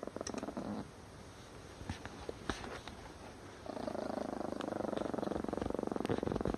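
A chihuahua growling: a low, fast-pulsing growl, short at first, then steady and unbroken from a little past halfway, with a few faint clicks of the phone being handled.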